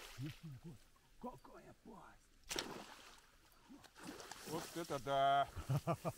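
Men's voices in short low mutterings and exclamations while a hooked fish is brought to the bank, with one sudden sharp noise about two and a half seconds in and a loud held shout near the end.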